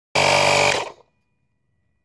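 Daihatsu Tanto's standard-equipment 12 V tyre-inflator compressor running with a steady hum and whine for about half a second, then switched off and dying away within a quarter second, as the tyre reaches its 2.4 target pressure.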